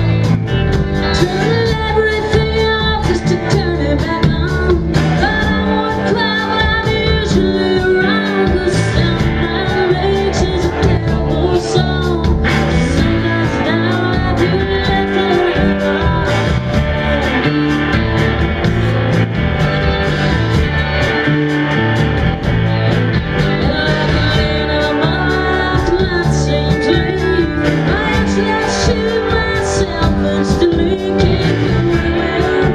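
Alt-country rock band playing live: electric guitars, bass and drums, with a woman singing lead.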